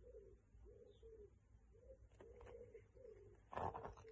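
A pigeon cooing faintly: a run of soft, low arched notes repeated about twice a second. A brief, louder rustle of a book being handled comes just before the end.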